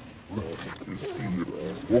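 Macaque calls: a run of harsh, wavering cries that ends in the loudest one, rising in pitch, near the end.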